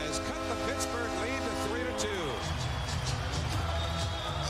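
Arena crowd cheering a goal in a broadcast recording of a hockey game, with music playing over it as a sustained chord of several steady tones. The chord stops a little over two seconds in, leaving the crowd noise.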